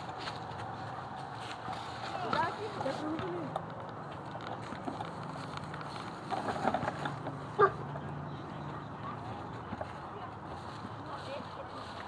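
Scattered, faint children's voices and short calls over steady low outdoor background noise, with one brief sharper sound a little past the middle.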